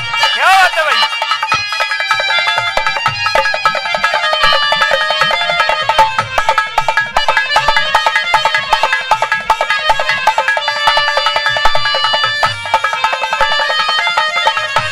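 Instrumental break of a Haryanvi ragni: harmonium playing a sustained melody over hand-drum strokes. In the first second a sung note glides down and stops.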